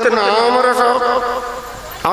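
A man's voice holding one long, wavering sung note without a break, fading away toward the end.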